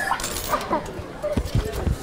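Children's voices with short wavering, whining cries, followed near the end by several dull low thumps.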